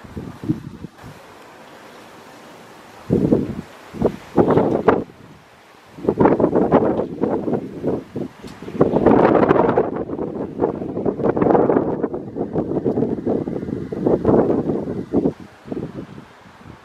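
Gusty wind buffeting the camera microphone in irregular bursts, coming nearly continuously from about six seconds in.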